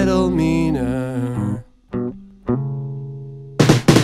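Rock band with electric guitars, bass and drums that stops abruptly about a second and a half in; after a brief silence two plucked guitar notes ring out and slowly fade, and the full band comes crashing back in near the end.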